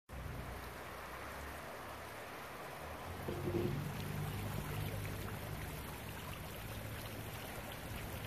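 Steady outdoor background hiss, with a low hum coming in about three seconds in.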